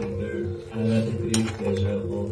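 A metal slotted spoon scraping and clinking against a steel kadhai while stirring grated carrots for gajar ka halwa, with a sharp clink partway through.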